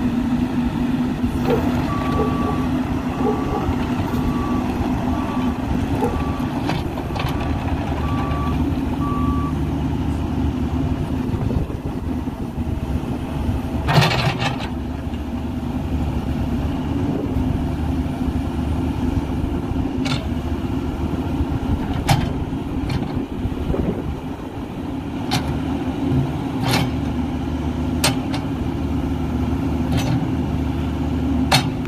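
Caterpillar 305.5E2 CR mini excavator's diesel engine running steadily while it tracks and works its boom and bucket, with a travel alarm beeping about once a second for several seconds near the start. A few sharp metal clanks come through, the loudest about halfway through.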